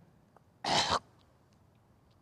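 A man's single short cough, a little over half a second in.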